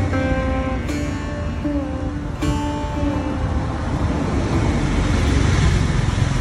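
Background music, a plucked string melody with bending notes, over a steady roar of outdoor traffic noise; the melody fades out about three seconds in, leaving the traffic noise.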